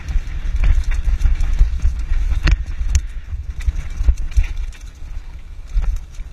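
Wind buffeting the microphone of a mountain bike riding fast down a rough dirt track, with the bike rattling and knocking over bumps. A few sharp knocks, the loudest about two and a half seconds in, and the rumble eases a little near the end.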